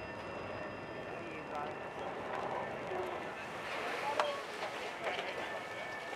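Faint, indistinct voices over a steady background noise, with a single brief click about four seconds in.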